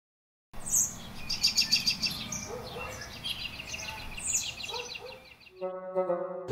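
Birds chirping and twittering: many short, high chirps and quick trills, starting after about half a second of silence and running until a child calls out near the end.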